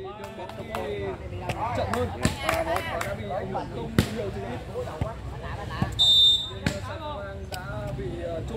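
A ball is struck hard several times in a rally, a string of sharp smacks with the strongest about four seconds in, under constant crowd chatter and calls. A short, shrill whistle blast sounds about six seconds in.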